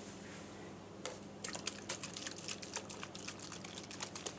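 A run of quick, irregular light clicks and taps from a hand handling a small glass bottle of vanilla extract with a plastic cap. The clicks begin about a second in.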